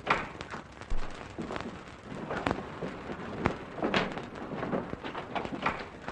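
Footsteps on a hard floor: irregular knocks and thuds about one every half second to a second, over the steady hiss of an old film soundtrack.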